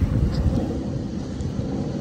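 Breeze blowing on the microphone: an uneven low rumble with a faint hiss above it.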